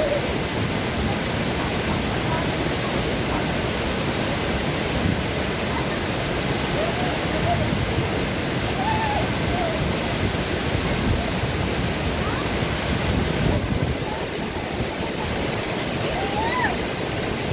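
Steady rush of a small waterfall pouring through a stone wall and splashing into a pool, a constant even roar of falling water. Faint voices come through it now and then.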